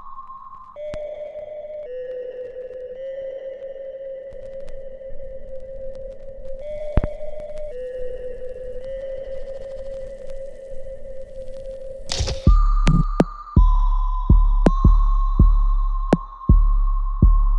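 Background music: long held electronic tones that step from one pitch to another. Near the end a sudden loud swell brings in deep, heavy bass beats, about one a second.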